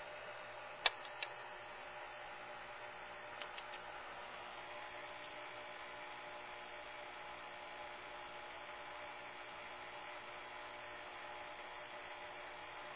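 Steady low hiss and hum of background noise, with two sharp clicks about a second in and three faint ticks a couple of seconds later.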